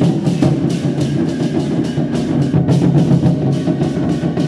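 Taiwanese war-drum troupe (zhangu) beating several large barrel drums together in a dense, continuous rhythm of fast strokes.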